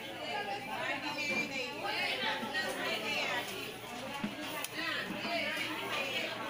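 Background chatter of several people talking at once, with overlapping voices and no single clear speaker.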